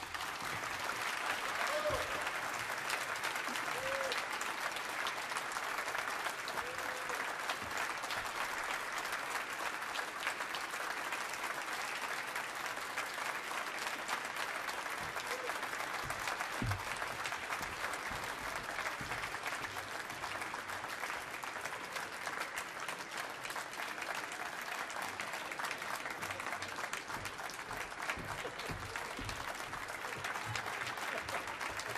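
Audience applauding steadily at the end of a cello and piano performance.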